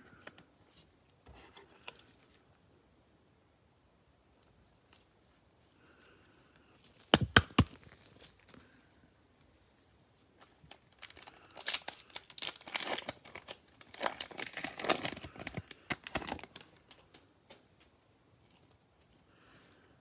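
A foil trading-card pack being torn open and its wrapper crinkled: a few sharp snaps about seven seconds in, then several bursts of ripping and rustling over about five seconds.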